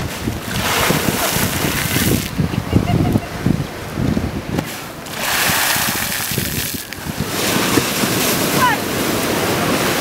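Sea waves breaking and splashing against a stone embankment and rocks, with wind buffeting the microphone.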